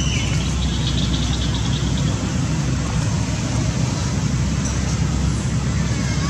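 Steady low rumble of nearby road traffic, with a faint brief high chirp right at the start.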